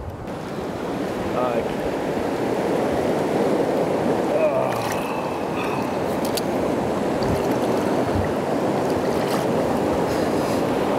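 Fast-flowing river water rushing close to the microphone, a steady rush that swells over the first couple of seconds and then holds.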